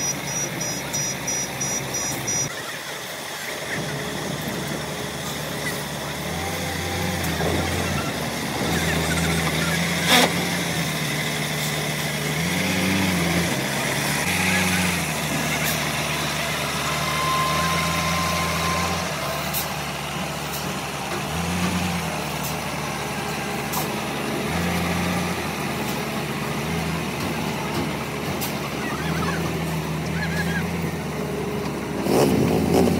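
Concrete mixer truck's diesel engine running, its low hum stepping up and down in pitch several times.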